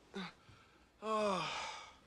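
A person's short grunt, then about a second in a long voiced sigh that falls in pitch.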